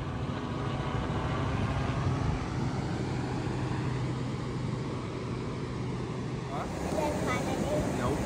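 A vehicle's engine running with a steady low hum. About six and a half seconds in, it gives way to a hazier outdoor sound with faint voices.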